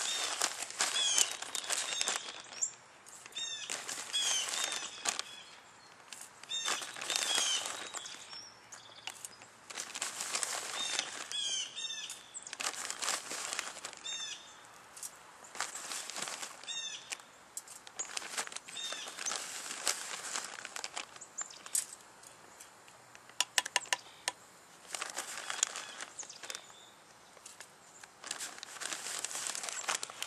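Plastic bag of dry oatmeal mix crinkling in repeated bursts of about a second as it is handled and shaken.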